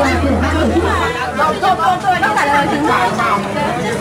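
Overlapping chatter of several people talking, with a low steady hum that stops about a second in.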